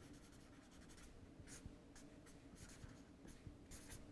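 Faint scratching of a felt-tip marker writing on paper, a run of short strokes one after another.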